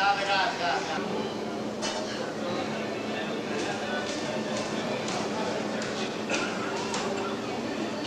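Busy indoor market hall hubbub: many voices chattering at once, with one nearer voice briefly at the start and a few scattered clicks and knocks.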